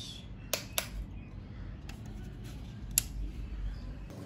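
Sharp clicks of a power switch being pressed to power up a car head unit on the bench: two quick clicks about half a second in and one more about three seconds in, over a faint low hum.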